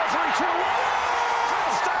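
Radio play-by-play announcer excitedly calling a goal-line run into a touchdown, over a steady crowd roar.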